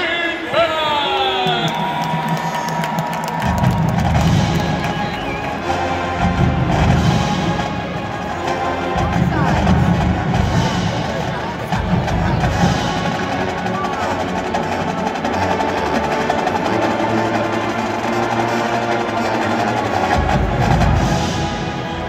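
College marching band opening its halftime show with a brass fanfare: held brass chords start about a second and a half in, joined by heavy bass-drum and drumline hits. A public-address announcer's voice ends just before the band starts.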